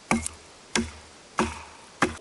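Hatchet chopping the end of a sapling to a point: three sharp strikes about two-thirds of a second apart.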